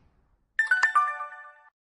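A short bright chime of a few ringing notes stepping down in pitch, with sharp clicks at its start: a synthetic subscribe-button click-and-ding sound effect. It starts about half a second in and fades out after about a second.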